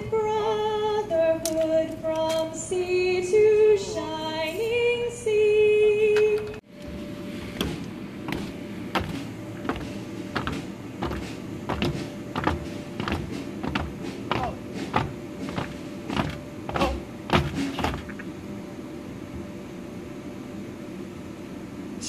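A woman's voice singing a slow melody of held notes for about six seconds, cut off abruptly. Then a run of irregular sharp clicks and knocks, a couple a second, over a faint steady hum; they die away about four seconds before the end.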